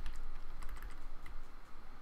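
Computer keyboard keys, most likely the arrow keys, tapped in a rapid run of light clicks, nudging an image in editing software. A steady low hum sits underneath.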